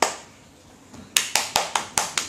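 Hand claps: one clap, then about a second later a quick even run of claps, about five a second.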